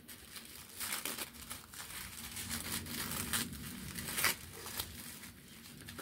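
White tissue paper rustling and crinkling in short, irregular rustles as it is unfolded by hand from around a small wrapped miniature.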